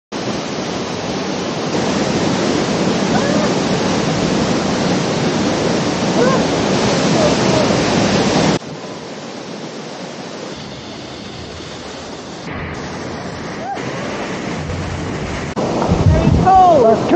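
Water rushing steadily in a waterfall and its mountain stream, loud. About eight and a half seconds in it drops suddenly to a quieter rush, with faint voices over it.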